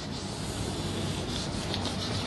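Chalk rubbed back and forth across a chalkboard to shade in a broad area, a steady, continuous scratchy rubbing.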